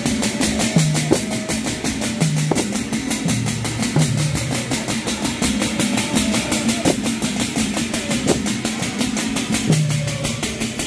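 Many hand-held frame drums beaten together in a fast, even rhythm, with steady low tones running underneath.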